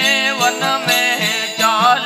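Gujarati devotional folk song (bhajan) sung by a male voice in a wavering, ornamented line over the steady drone of a tamburo lute, with small hand cymbals (manjira) jingling to an even beat of about three strokes a second.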